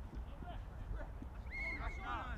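Referee's whistle blown once near the end, a single steady note held for about half a second, over scattered players' shouts; a loud shout follows right after it.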